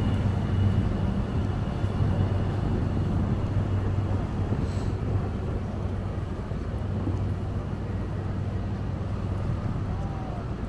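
A steady low engine drone over general outdoor traffic noise.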